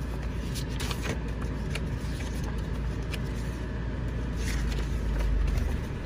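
2018 Mitsubishi Pajero Sport's 2.4-litre turbo-diesel idling, heard from inside the cabin as a steady low hum that swells slightly near the end. A few light clicks sound over it.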